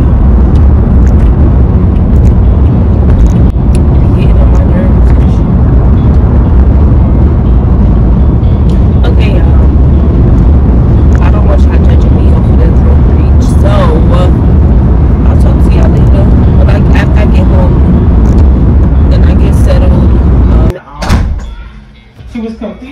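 A car driving, heard inside the cabin: a loud, steady low rumble of road and engine noise that cuts off suddenly near the end.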